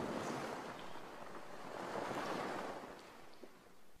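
Soft rushing noise like surf, swelling twice and dying away near the end.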